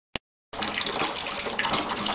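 Tap water running steadily into a kitchen sink over dishes. It starts about half a second in, after a short click.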